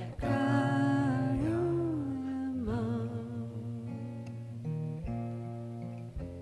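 A woman's voice sings a held, wavering melody over acoustic guitar, with a slow rise and fall in pitch. The voice fades out about halfway through, and acoustic guitar chords are strummed a few times near the end.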